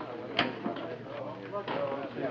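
Indistinct voices in the background, with one sharp knock about half a second in.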